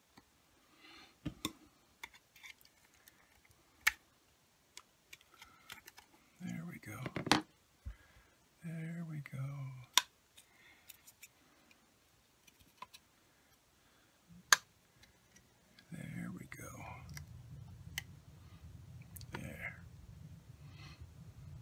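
Scattered sharp clicks and snaps of plastic as the sealed back cap of a wiper motor's control module is pried apart and its circuit board worked free. Low muttering comes twice in the middle, and a steady low hum starts near the end.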